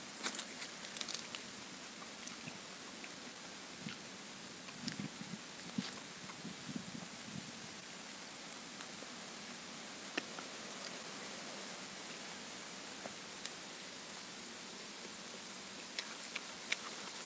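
Steady faint background hiss with a few soft scattered clicks and rustles, a small cluster of them in the first second and single ones later.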